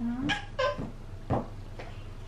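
A toddler's excited vocalising: a string of short, high squeals and babbles, about half a dozen through the two seconds.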